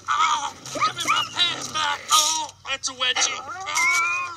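A man yelling and crying out in pain, with short grunting 'uh' sounds near the end.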